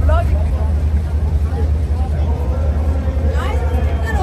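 Indistinct voices of people at a stadium entrance over a steady low rumble, with a couple of brief voice fragments near the start and again near the end.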